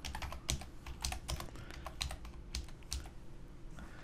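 Computer keyboard typing: a run of about a dozen quick, irregularly spaced keystrokes as a short phrase is typed.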